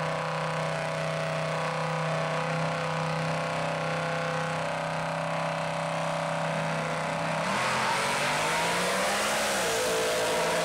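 Drag cars' engines holding a steady note at the starting line, then launching about seven and a half seconds in: the engine note climbs with a rush of noise as they accelerate away, and drops again near the end.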